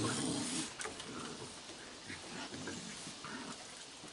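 Raccoons making faint vocal sounds as they crowd in to be hand-fed. A few short, quiet sounds are scattered through, loudest at the start.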